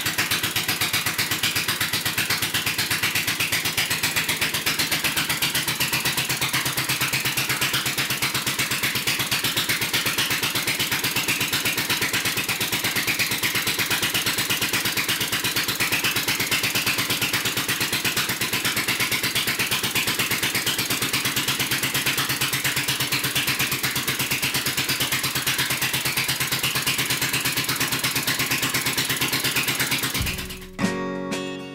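Single-cylinder marine boat engine running steadily on a test stand, with an even, unchanging beat of firing strokes.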